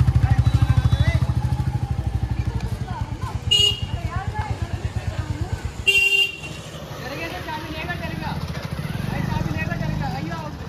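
Motorcycle engine running with an even, pulsing beat that fades as the bike slows and stops about six seconds in. Two short horn toots sound, one near the middle and one as the engine stops.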